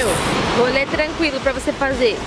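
A woman talking over a steady rushing background noise, after a short glitchy whoosh at the very start.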